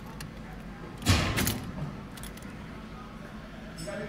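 Faint steady low hum inside a car with the ignition switched on, with a few light clicks and a short rustle about a second in.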